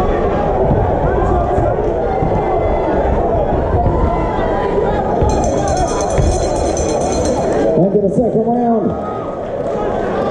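A hall crowd shouting and calling out during a boxing bout, with music underneath.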